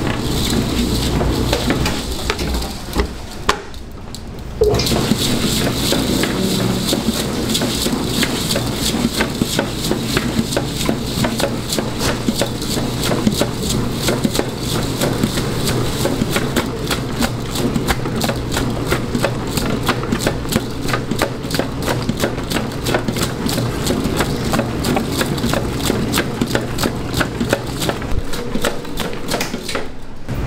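Commercial stand mixer running, its dough hook kneading a stiff waffle dough studded with pearl sugar: a steady motor hum under constant rapid, irregular clicking and knocking. The sound drops away briefly about three to four seconds in, then resumes.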